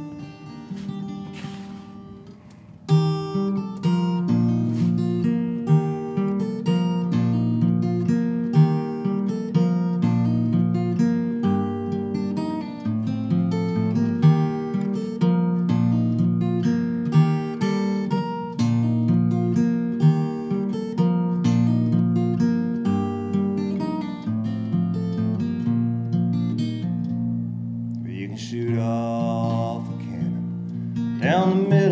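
Solo acoustic guitar played fingerstyle: a few quiet notes, then about three seconds in a steady picked pattern of bass notes and chords begins, the introduction to a song.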